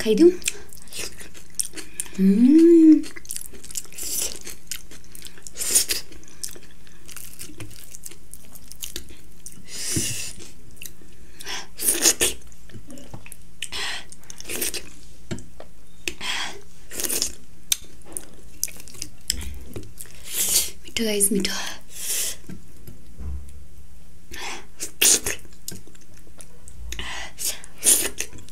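A person eating by hand and chewing food, heard as a long run of short mouth clicks and smacks. A brief rising hum comes about two seconds in, and another short vocal sound near the end.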